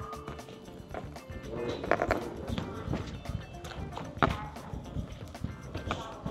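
Small plastic wheels of a toddler's ride-on toy rolling over a tiled floor, with scattered clicks and knocks, two louder ones about 2 and 4 seconds in. Background music plays throughout.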